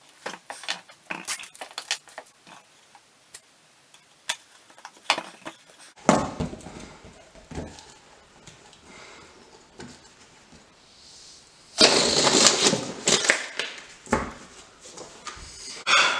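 Sellotape being handled and pulled off its roll while it is stuck onto an inflated rubber balloon: scattered crackles and clicks, then a louder rasping stretch of about two seconds near the end.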